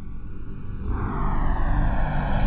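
A sustained droning tone with a low rumble beneath it, swelling steadily louder. Its pitch glides slowly up and then back down, like a build-up swell.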